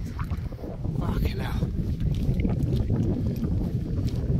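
Strong wind buffeting the phone's microphone: a steady, heavy low rumble.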